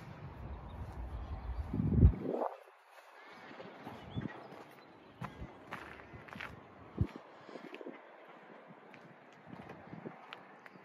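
Wind buffeting the microphone for the first two and a half seconds, strongest about two seconds in, then stopping abruptly. After that come scattered footsteps crunching on gravel.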